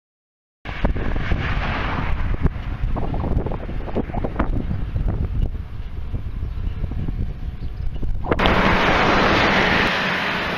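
Wind buffeting the microphone of a camera riding along on a moving bicycle: a loud, rumbling wind noise with scattered knocks, starting suddenly just over half a second in. About eight seconds in it changes abruptly to a steadier, hissier wind noise.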